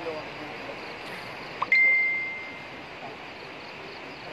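A smartphone notification ding: a short blip, then one clear high tone about two seconds in that dies away over about a second, over steady background hiss.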